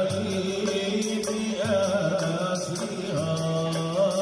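Moroccan Sufi madih and samâa: male voices chanting long, wavering notes over a steady beat from a frame drum and a goblet drum.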